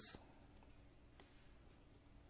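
The hiss at the end of a spoken word, then faint room tone with a single small click about a second in.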